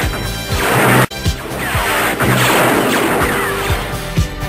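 Space-battle sound effects: loud rushing, crashing blasts with falling whistling sweeps, cut off sharply about a second in and then starting again. They play over music with a steady bass drum beat.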